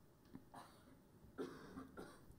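Near silence with a faint cough about a second and a half in.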